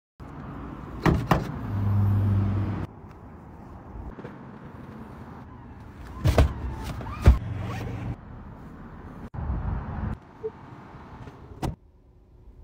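Clicks and short electric-motor whirs from a Tesla: two sharp clicks about a second in, followed by a motor hum lasting about a second, then more clicks and a shorter whir between six and eight seconds in. The sound stops and starts abruptly at cuts.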